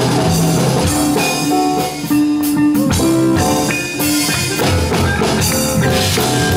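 A live band playing, with guitar and drums, amplified through stage speakers. The music runs without a break.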